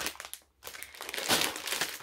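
Clear plastic bag holding a felt banner crinkling and rustling as it is handled and set down, starting about half a second in after a brief pause.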